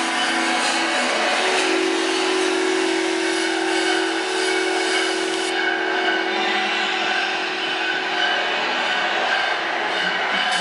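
Electro-acoustic improvising ensemble of acoustic instruments and live electronic processing playing a dense, grinding noisy texture over a held cluster of tones. The cluster steps up in pitch about a second in, and the high noise thins a little past the middle.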